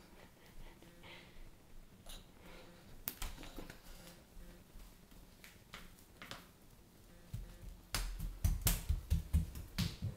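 Footsteps on a tiled floor: a few faint scattered steps and taps at first, then a quick run of loud sharp clicks and thumps, several a second, in the last two or three seconds.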